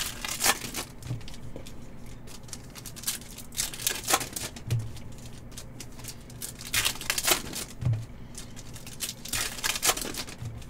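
Foil trading-card pack wrappers being torn open and crinkled by hand, in four short bursts a few seconds apart.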